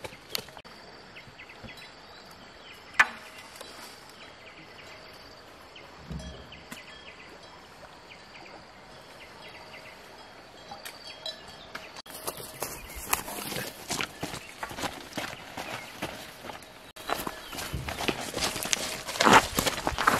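Quiet outdoor ambience with one sharp knock about three seconds in, then footsteps rustling through grass and undergrowth, getting louder near the end.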